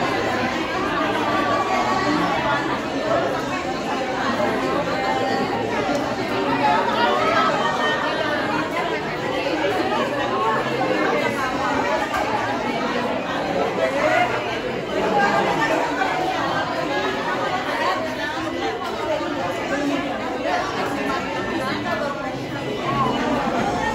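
Crowd chatter: many women's voices talking over one another at once, with no single voice standing out.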